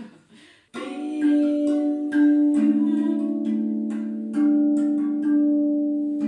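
RAV drum, a steel tongue drum, played with the hands: after a short pause, a slow phrase of struck notes begins about a second in, each note ringing on long and overlapping the next.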